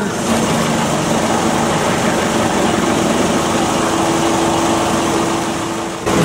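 Steady street noise with the low hum of an idling engine.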